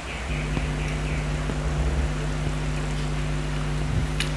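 A steady mechanical hum with a low drone, starting just after the beginning and holding an even pitch throughout.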